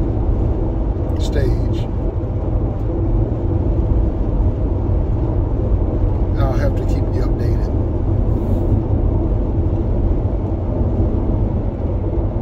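Steady road and engine rumble heard inside a moving car's cabin, with two short, softer sounds about a second in and again about six and a half seconds in.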